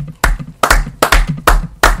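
Slow, even hand claps close to the microphone, five in a row at about two a second, each with a heavy low thud.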